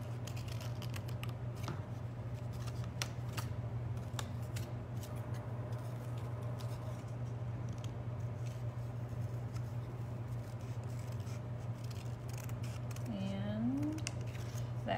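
Small scissors snipping through paper in many short, irregular cuts as a paper figure is cut out around its limbs, over a steady low hum.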